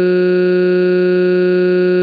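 A synthesized text-to-speech voice holding one long cartoon crying wail at a single flat pitch, loud and unwavering.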